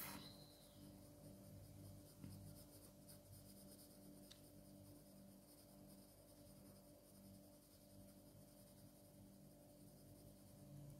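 Faint scratching of a graphite pencil on drawing paper as it shades in small strokes.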